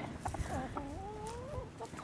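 Silkie chickens clucking quietly, one giving a drawn-out call that rises in pitch a little under a second in, with a few faint clicks.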